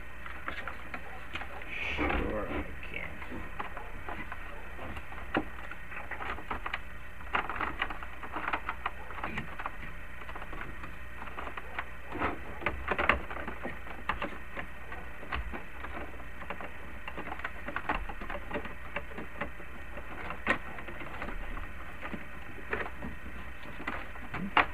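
A Realistic TRC-451 CB radio and its wiring being pushed and shuffled into a Jeep Cherokee's plastic dash opening by hand: irregular clicks, knocks and scrapes, with a longer scraping rustle about two seconds in.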